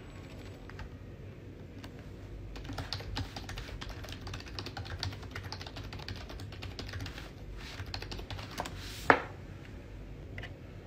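Rapid, irregular clicking of typing on a computer keyboard, starting about two and a half seconds in and going on for several seconds, then one sharp, louder knock just before the end.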